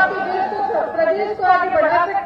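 A woman speaking into lectern microphones, a continuous address with no other sound standing out.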